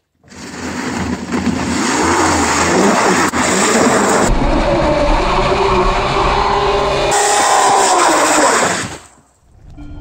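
Rear tyre of a homemade electric motorcycle spinning in a burnout: loud screeching of rubber on asphalt with a squeal that wavers up and down in pitch. It stops abruptly about nine seconds in.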